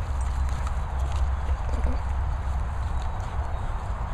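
A heavy low rumble on the microphone with soft, regular thuds of footsteps on grass as the camera is carried along.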